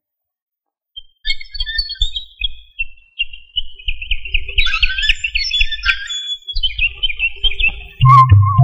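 Film soundtrack of high, bird-like twittering chirps over irregular low rumbling pulses, starting about a second in after dead silence.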